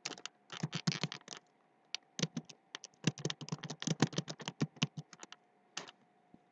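Typing on a computer keyboard: a quick run of keystrokes, a short pause about a second and a half in, then a longer run of keystrokes.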